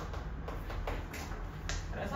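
Chalk on a chalkboard while writing: a handful of light, separate taps and scratches as the strokes are made.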